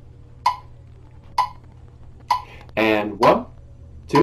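Metronome clicking steadily, a little under once a second, as a count-in tempo. A man's voice counts off briefly about three seconds in.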